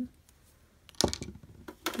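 A short run of light knocks and clicks, as a small gel polish bottle is capped and set down and things are handled on a plastic table mat. The sounds begin about halfway through, after a quiet first second.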